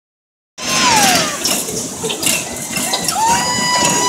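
Children shrieking and shouting on a spinning carnival ride over a noisy fairground din. A squeal slides down in pitch soon after the sound cuts in, and a long, high, held scream fills the last second.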